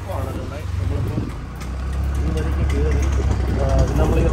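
Street sounds: the low rumble of a vehicle engine, growing louder through the second half, with people's voices talking nearby.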